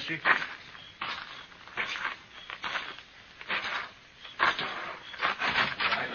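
Footsteps as a radio-drama sound effect: slow, even steps, about seven of them, a little under one a second.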